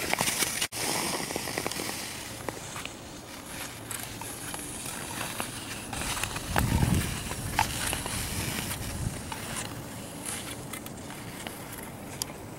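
Nordic skate blades scraping and gliding on the canal ice as a skater strides past, loudest about six to seven seconds in.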